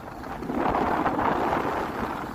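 Rushing noise of skiing downhill: skis sliding over packed snow, with wind on the microphone. It swells about half a second in and eases off near the end.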